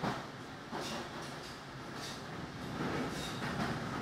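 Berlin S-Bahn train running, heard from inside the carriage: a steady rolling rumble of wheels on rail with several sharp clacks from the wheels.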